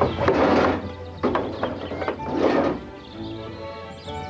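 A large cloth sheet being pulled and whipped away, three loud swishes in the first three seconds, over background music.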